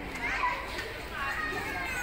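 People talking outdoors, several overlapping voices, some of them high-pitched.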